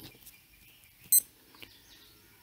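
A single short, high-pitched electronic beep about a second in, over faint background noise on a computer audio line.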